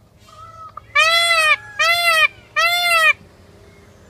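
Indian peafowl giving three loud calls in quick succession, starting about a second in. Each call is a nasal honk about half a second long that rises and then falls in pitch.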